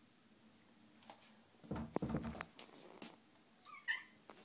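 A domestic cat gives a short meow near the end. About two seconds in there is a brief thump and rustle of movement, with a few light clicks around it.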